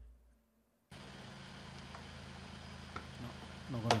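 A brief knock, near silence, then a steady electrical hum and hiss from an open microphone line that cuts in abruptly about a second in. A man starts to speak near the end.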